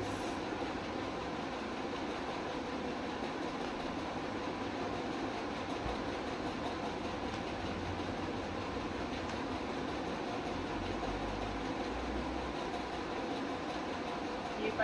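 Steady background hum and hiss, like a running room fan or air conditioner. A brief swish of satin saree fabric comes at the very start as the saree is flung open.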